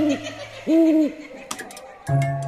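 An owl hooting twice as a cartoon sound effect, each hoot rising, holding and falling in pitch, over a low steady hum. A single sharp tick follows about one and a half seconds in.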